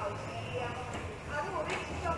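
Indistinct voices of several people talking in a large hall over a steady low hum, with a brief knock near the end.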